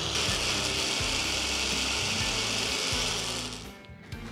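Countertop blender motor running steadily as it wet-grinds soaked rice, poha, urad dal and sabudana into a fine, runny dosa batter; the motor winds down and stops shortly before the end.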